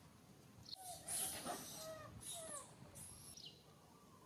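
Macaques calling: a run of short squeaky calls that rise and fall in pitch, with hissy bursts, starting about a second in and fading by the end.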